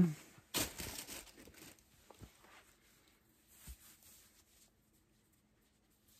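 Knitted work gloves being pulled onto the hands: a burst of fabric rustling about half a second in that fades over a second or so, then two faint taps.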